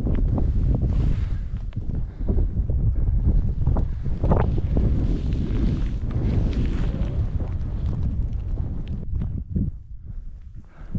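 Wind buffeting the microphone in a steady low rumble, with a few short crunches mixed in; the wind noise eases near the end.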